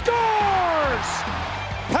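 A play-by-play commentator's drawn-out goal call, falling in pitch over about a second, over a steady background music bed with some noisy arena din.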